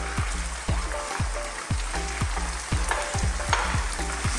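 Chicken pieces sizzling in hot oily sauce in a pot as chopped onion is added and stirred in, with the spoon and a wooden spatula knocking against the pan many times.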